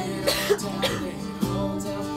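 Acoustic guitar strumming steadily in a break between sung lines, with a person's cough, muffled as if into a sleeve, about a third of a second in.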